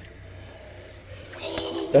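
Quiet, steady background noise, then a person's voice beginning near the end.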